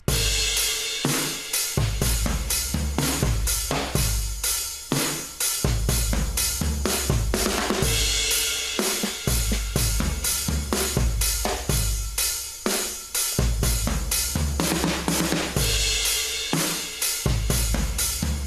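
A programmed rock drum beat from the Addictive Drums software sampler plays back, with kick, snare, hi-hat and cymbals in an even groove. The snare sample is tuned lower.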